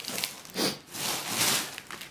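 Rustling, scraping noise as a bear cub paws and noses at a plastic food container and its packaging. There is a short burst about half a second in and a longer one from about a second in.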